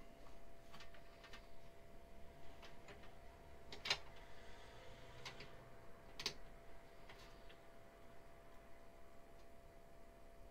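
Faint, scattered small clicks and taps of plastic connector plugs and cables being handled and pushed onto the front-panel pin header of a PC motherboard inside the case, the sharpest click about four seconds in. A faint steady hum sits underneath.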